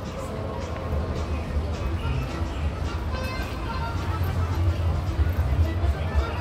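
Theme-park background music playing, with the voices of passing visitors and a steady low rumble underneath.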